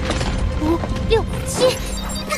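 Mechanical sound effects over background music: short clicking and whirring sounds with brief gliding electronic tones.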